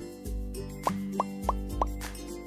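Background music with four quick rising plop sound effects in a row, about three a second, in the second half.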